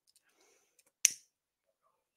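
A single short, sharp click about a second in; otherwise very quiet.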